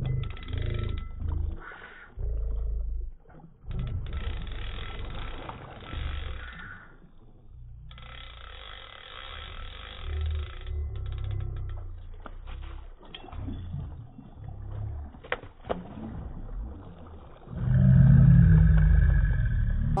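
Wind buffeting the phone's microphone in irregular low gusts, the loudest near the end, with stretches of splashing as a hooked rainbow trout thrashes at the water's surface.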